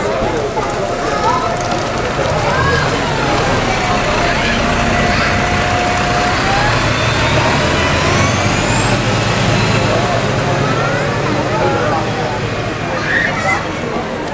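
Karosa B961 articulated city bus's diesel engine running as the bus pulls away and drives off, its low engine note strongest mid-way, with a high whine rising about seven seconds in.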